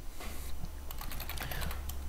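Computer keyboard keys typed in a quick run, starting about a second in, as a password is entered, after a brief soft noise near the start.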